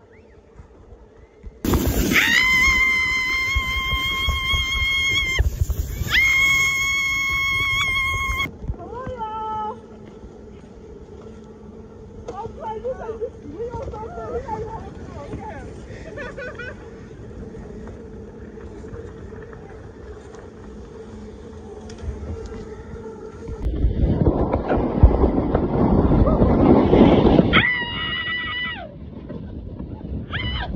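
People screaming on snow tubes: two long, high, held screams with a short break between them, then softer voices and a falling cry. Near the end comes a rushing scrape of a tube sliding fast over snow, followed by another short held scream.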